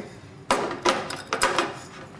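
Three sharp clattering knocks of kitchen utensils being handled on a worktop, about half a second apart, while seasoning is added to a pan of soup.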